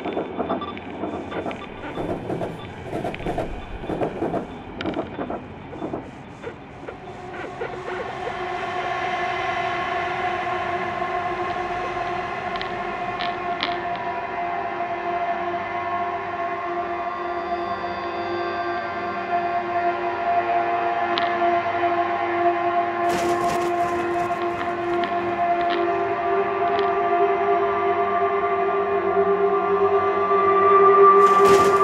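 Commuter train running, heard from inside the passenger car. For the first several seconds there is dense rattling and clicking of wheels over the track. Then a steady droning hum of several held tones slowly grows louder, with a brief burst of clicks near the end.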